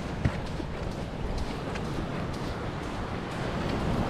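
Wind buffeting a chest-mounted microphone on an open beach, with footsteps on sand.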